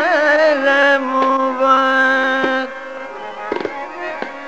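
A male Hindustani classical vocalist holds one long steady note, accompanied by tabla. The voice falls away about two-thirds of the way through, leaving quieter accompaniment with a few tabla strokes.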